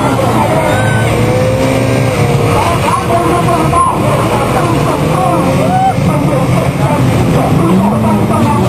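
Banger racing cars' engines revving and running together, their pitch rising and falling constantly, mixed with music and a voice.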